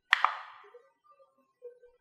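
A computer mouse button clicked once, a quick press and release close together near the start.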